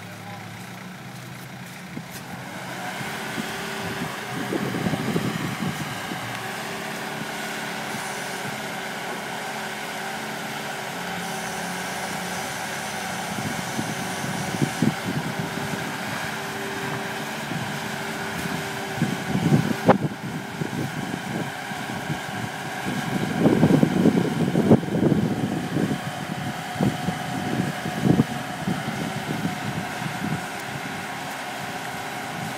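A boatyard travel lift's diesel engine running steadily as its slings hoist a sailboat out of the water, with a few louder, rough bursts about a third of the way in and again near the end.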